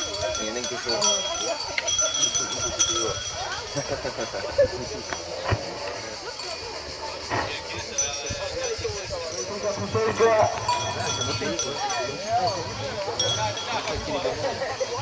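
Outdoor crowd of spectators talking and calling out over one another, with a bell ringing now and then.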